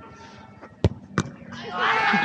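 A football struck hard by a kick, a sharp thud, followed about a third of a second later by a second sharp impact as the ball hits something at the goal. A man's long, loud shout starts near the end.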